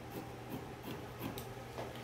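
Scissors cutting through cotton lining fabric: a series of faint snips from the blades, a few per second.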